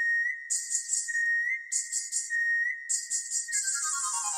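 Intro of a Tamil film song: a held high whistle-like note with a small upward flick about every 1.2 s, over bursts of high shaker-like percussion. Near the end a quick run of falling notes begins.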